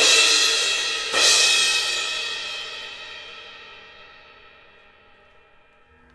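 Sabian Anthology cymbal struck twice with a drumstick, at the start and again about a second in, the second hit ringing on and fading away slowly over about five seconds.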